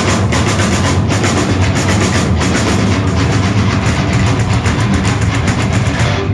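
Heavy metal band playing live: distorted electric guitars, bass guitar and a drum kit, loud and dense, with fast, evenly spaced drum hits.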